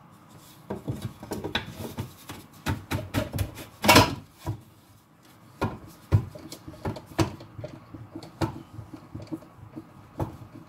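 Flat wooden boards knocking and sliding against each other and a wooden bench top as they are fitted into an opening over steel guide rods. There is an irregular string of knocks with some scraping, the loudest knock about four seconds in.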